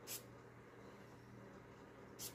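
A perfume bottle's atomizer sprayed once, a short hiss right at the start, over faint room tone.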